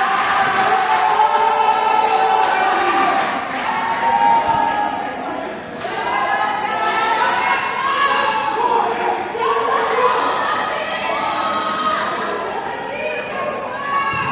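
Crowd of supporters chanting and singing together in the stands, many voices overlapping in a loose sung chant that keeps going, with a short dip about halfway through.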